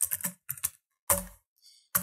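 Computer keyboard being typed on: a quick run of keystrokes, then one louder keystroke a little after a second in.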